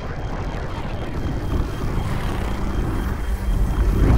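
A deep rumble with a rushing hiss, slowly growing louder, with a faint steady high tone running through it.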